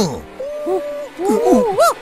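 A man's voice making a string of gliding hooting cries that rise and fall in pitch, mock kung-fu calls, with a laugh near the end.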